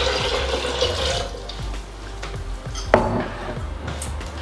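Water being poured from a glass measuring jug into a blender jar of soaked almonds, the pour fading out after about a second. About three seconds in comes a single sharp knock, as the jug is set down on the counter.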